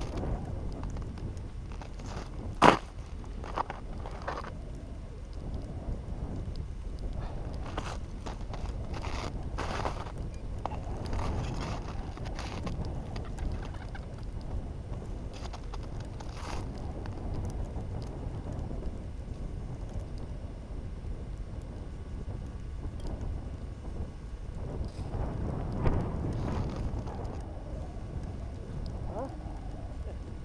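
Wind buffeting the microphone on open ice: a steady low rumble. Scattered light knocks and clicks come through it, with one sharp click about three seconds in.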